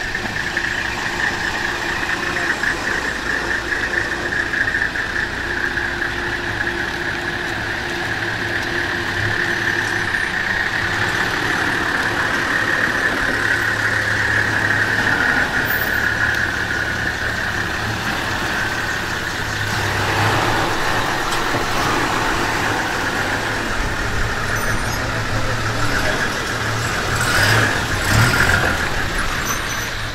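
Engines of Toyota Land Cruiser pickups running at low speed as the vehicles roll past one after another, with a steady high-pitched drone over the engine sound and a louder swell near the end.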